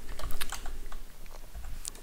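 Computer keyboard typing: a quick, irregular run of key clicks as code is entered.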